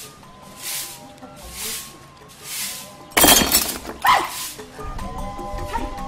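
Broom sweeping paved ground in strokes about once a second, over background music with long held notes. About three seconds in comes a sudden loud crash, followed about a second later by a second sharp sound.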